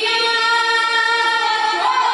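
Children and a woman singing a devotional jagran bhajan together through microphones, holding one long note that moves to a new pitch near the end.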